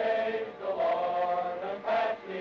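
A group of men singing together in unison, holding long notes, with short breaks between phrases.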